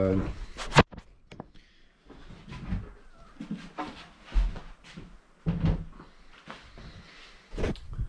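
A wooden subwoofer port piece being handled and turned over, with a sharp, loud knock just under a second in and several duller knocks and bumps after it.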